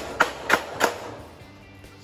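Hammer tapping a carriage bolt through a drilled hole in a wooden cage leg: about four quick strikes in the first second, three a second, then they stop.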